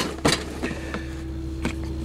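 A few light knocks and rubbing sounds from a hard plastic portable gas stove case being pulled out from beside a truck seat, over a steady low hum in the cab.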